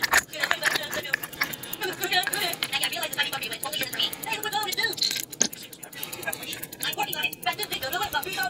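Indistinct voice in the background, with light metallic clicks and taps from handling small steel parts of a watch movement.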